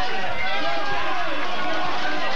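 Several people shouting over one another in a heated argument, their words running together.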